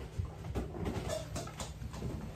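A few light knocks and clinks of altar vessels being handled and cleaned at the altar, over a steady low room hum.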